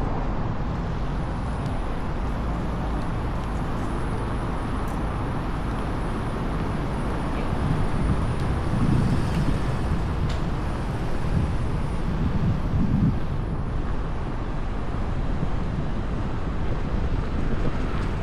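Wind buffeting the camera microphone as it moves along with a slow-rolling electric unicycle, over a steady low rumble of tyre and street noise. The wind swells a few times around the middle.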